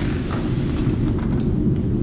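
A steady low rumble or hum with no speech; the higher pitches are faint.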